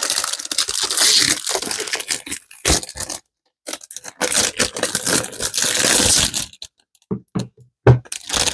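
Packaging rustling and crinkling as a boxed planner cover is pulled out of its wrapping, in two long spells with a short break about three seconds in, followed by a few light knocks as the box is handled and set down.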